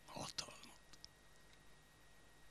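A man's short, breathy whisper-like exhalation close to a microphone, with a sharp mouth click in the middle of it, followed by a few faint clicks over near-silent room tone.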